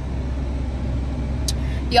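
Steady low hum of a car's engine idling, heard from inside the cabin.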